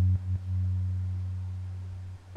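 Lightly overdriven sub bass synth playing an 808-style trap bass line, a deep near-pure low tone. A couple of quick retriggered notes come early on, then one long note slowly fades out.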